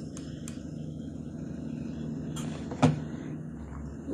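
A steady low background hum with a few faint clicks, and one sharper tap about three seconds in, as a hot glue gun is set down on a wooden worktable while a satin ribbon leaf is handled.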